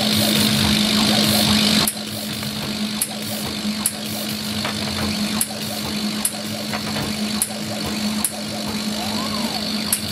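CO2 laser engraver running a focus test at full power: the machine's steady hum, with a hiss for about the first two seconds. After that come sharp ticks about once a second as the head scans line after line.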